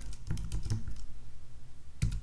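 Typing on a computer keyboard: a quick, even run of keystrokes.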